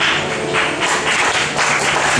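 Background music with a loud, rhythmic, noisy shaking percussion over it.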